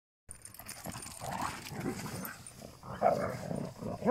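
Dogs growling and grunting in short, irregular bursts as they play-wrestle, loudest about three seconds in.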